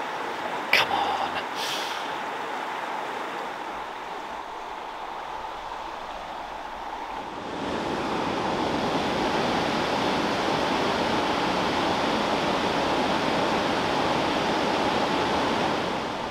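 Steady rush of a river flowing over rocks, which turns louder and fuller about seven and a half seconds in as whitewater rapids take over. Two light knocks come in the first couple of seconds.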